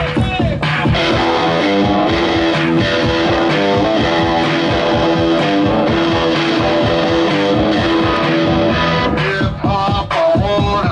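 Live rock band playing: electric guitars with bass and drums keeping a steady beat.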